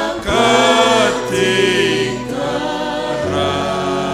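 Slow worship song sung by a group of voices, with long held notes that bend in pitch and a steady low bass beneath.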